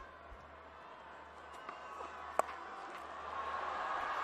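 Faint stadium crowd noise that grows a little louder toward the end, with a single sharp crack of bat on ball a little over halfway through.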